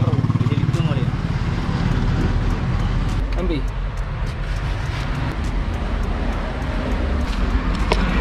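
A motor vehicle engine running at idle close by, with light clicks from handling metal parts and brief snatches of background voices.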